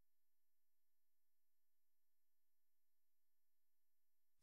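Near silence: only a very faint steady electronic hum of the recording.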